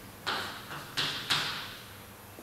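Chalk striking and writing on a blackboard: four sharp taps within about a second as a letter and a line are drawn, each trailing off briefly in the room.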